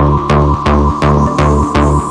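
Tech house track: a steady four-on-the-floor kick drum and pulsing bassline at about two beats a second, under a sustained synth tone. A high hissing sweep comes in after about a second.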